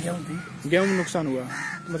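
A man talking in Hindi, with crows cawing in the background.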